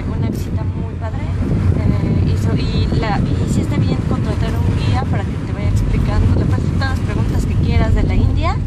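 Steady low road and engine rumble inside the cabin of a moving car, with a woman's voice talking over it.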